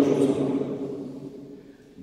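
Speech only: a man says one drawn-out word that fades away over about a second and a half, followed by a short pause.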